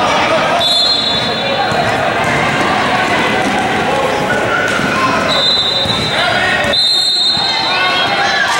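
Indoor basketball game sounds in a large, echoing gym: players and spectators calling out and talking over one another, and a basketball bouncing on the hardwood court. Steady high-pitched squeals come in briefly near the start and again for the last few seconds.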